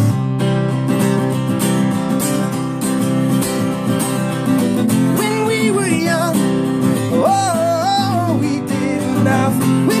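Acoustic guitar strummed steadily in a folk-pop rhythm, with a man's singing voice joining in for short phrases about halfway through.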